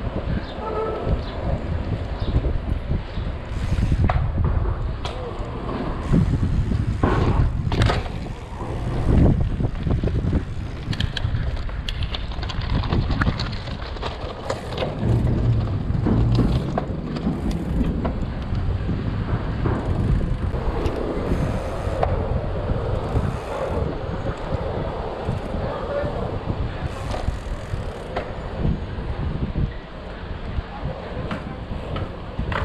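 Wind rushing over an action camera's microphone as a 29-inch mountain bike rolls along city streets, with tyre noise and frequent sharp knocks and rattles from the bike over bumps.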